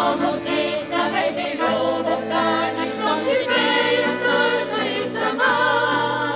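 A women's vocal group singing a Bulgarian old urban song in harmony over a steady instrumental accompaniment of guitar and accordion.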